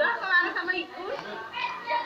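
Indistinct voices of several people talking over one another.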